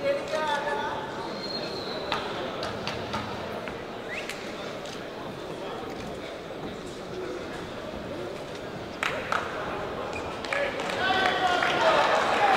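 Arena crowd murmuring and talking indistinctly, with a voice calling out at the start and again near the end, and a few sharp knocks.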